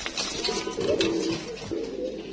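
Domestic pigeons cooing, a low drawn-out coo.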